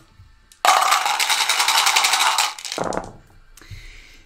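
A handful of small dice shaken hard for about two seconds in a fast, dense rattle, then thrown into a felt-lined dice tray with a few scattered clicks as they settle.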